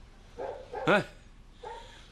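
Only speech: a man's single short questioning "Huh?" about a second in, with quiet room tone around it.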